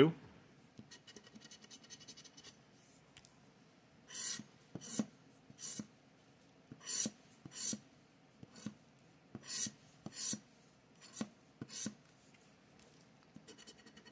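Plastic scratcher scraping the coating off a scratch-off lottery ticket: about ten short rasping strokes, roughly two-thirds of a second apart, starting about four seconds in, with a fainter scrape before them.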